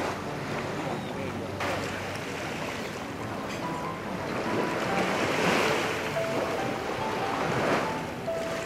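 Shallow sea water sloshing and lapping, with wind on the microphone; the wash swells louder in the second half. A faint melody of short single notes sits behind it.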